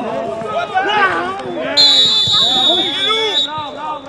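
Referee's whistle blown in one long steady blast of about a second and a half, stopping play, over players shouting to each other on the pitch.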